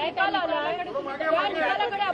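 Speech only: people talking, several voices overlapping.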